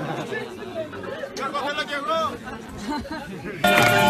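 Party crowd chatter, several people talking over one another. About three and a half seconds in it cuts abruptly to louder live music with held instrument notes and voices over it.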